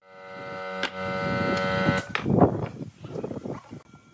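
An electric power tool motor running with a steady whine that cuts off abruptly about halfway through. It is followed by irregular knocks and scrapes.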